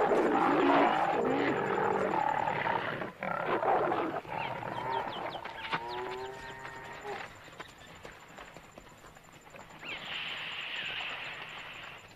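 Wild animals calling during a clash between hippos and a lion: loud, rough calls over noise for the first four seconds, then fading, with a short run of pitched calls about six seconds in and a thin high-pitched sound near the end.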